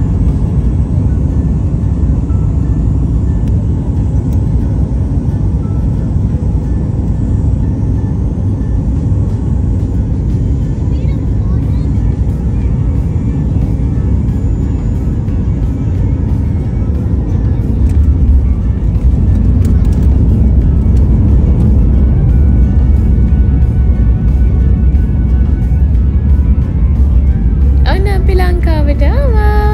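Airliner cabin noise during landing: a loud, steady low rumble that grows louder about two-thirds of the way through.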